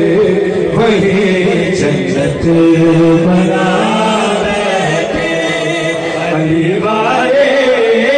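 Male voice chanting a manqabat, an Urdu devotional poem in praise of Ali, through a microphone in long, wavering held notes.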